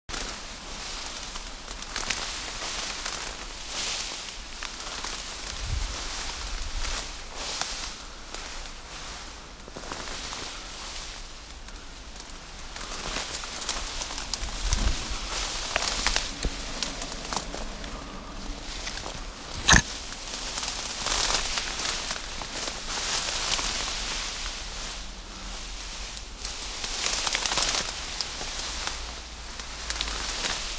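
Tall grass rustling and brushing against the camera as it is pushed through the stems, in uneven swishes, with one sharp click about two-thirds of the way through.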